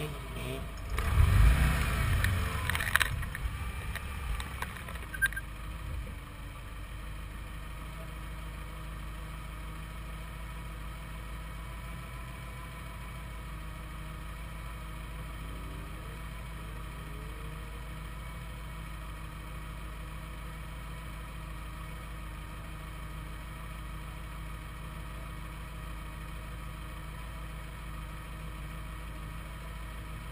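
Mazda MX-5 pulling away across grass, its engine revving hard for a couple of seconds about a second in, fading over the next few seconds. After that a faint, steady hum continues.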